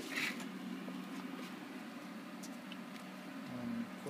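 A brief rustle right at the start, then a faint steady low hum with a few light ticks.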